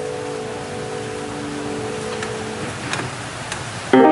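A held keyboard chord sustains and then stops about two-thirds of the way through, leaving a steady hiss with a few soft clicks. A loud new chord strikes at the very end.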